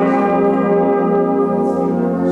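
Brass band of cornets, horns, trombones and tubas holding a loud sustained chord.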